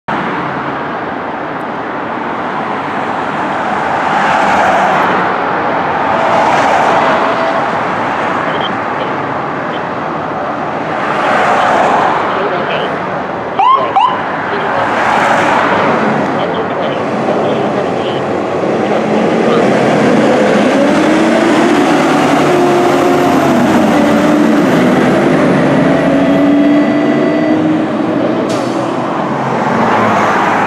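Ladder tender fire truck leaving on a call, over steady street traffic. A short rising siren chirp sounds about halfway through, then the truck's engine pitch climbs and holds as it drives away.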